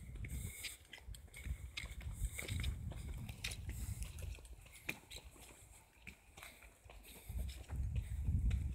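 Footsteps along a forest path, with irregular sharp clicks and an uneven low rumble of movement on a handheld phone microphone.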